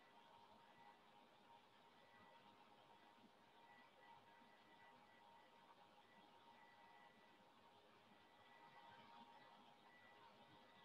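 Near silence: faint room tone hiss with a faint steady high whine.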